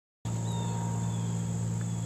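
Insects droning steadily in a high pitch, over a steady low hum; the sound starts about a quarter second in.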